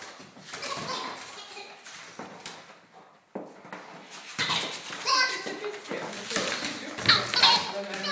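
Rubber squeaky dog toy giving short high-pitched squeaks while a dog plays with it. The squeaks come thicker and louder in the second half.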